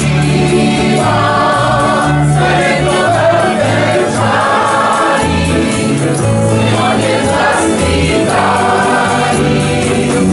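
A group of voices singing a song together to live fiddle and guitar accompaniment, over a bass line that moves to a new note about every half second.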